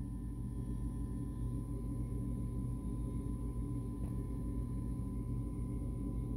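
A steady low droning hum with a faint high steady tone over it, unchanging throughout.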